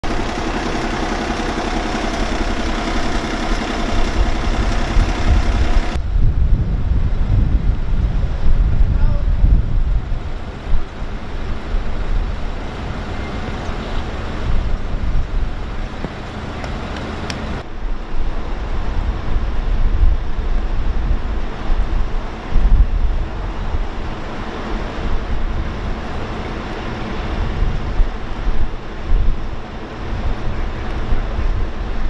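Outdoor field sound of emergency vehicles at the scene: a steady engine hum for the first few seconds, then wind rumbling on the microphone, with a sudden change in the sound at each cut.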